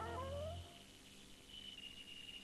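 A short rising, voice-like sound effect from a cartoon advert, its pitch sweeping upward and cutting off well under a second in, followed by low tape hiss with a steady high whine.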